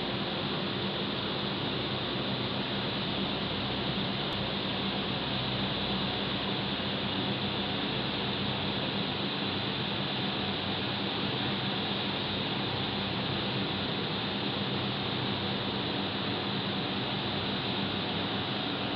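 Steady hum and hiss of rooftop air-conditioning units running, an even drone with no breaks.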